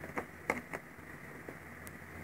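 A handful of light clicks and taps from a hand handling a cosmetic loose-powder jar and its lid.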